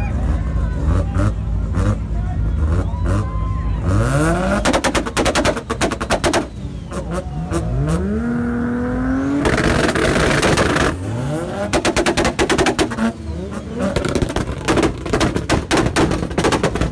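Car engine revved hard several times, each climb in pitch giving way to a rapid, machine-gun-like crackle from the exhaust, amid crowd voices.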